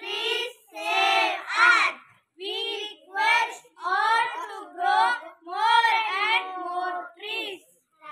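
Children singing in short phrases, with brief pauses between them.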